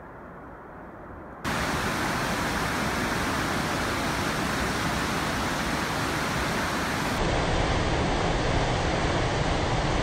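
Steady, muffled roar of a distant waterfall; about a second and a half in it cuts suddenly to the much louder, full rush of whitewater rapids pouring between granite boulders, which steps up a little louder again past halfway.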